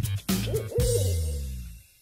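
An owl hooting over the end of a music cue. The music dies away to near silence shortly before the end.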